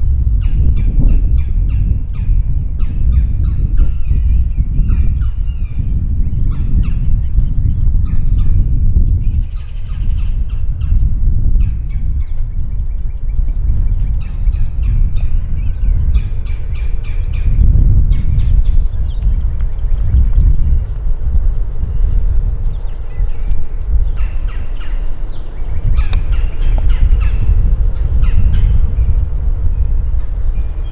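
Birds calling in repeated runs of short, harsh calls, over a loud, steady low rumble.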